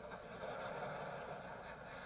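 Faint, steady hiss of a large hall's room tone and sound system, with no distinct events.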